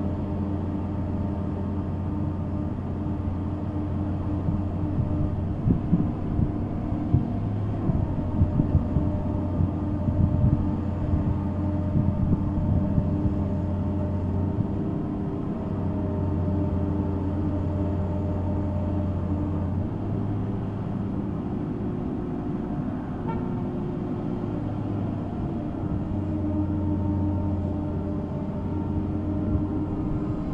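Engine of a mobile boat hoist (travel lift) running steadily while it lifts and carries a cabin cruiser in its slings, a low hum whose note shifts slightly a few times.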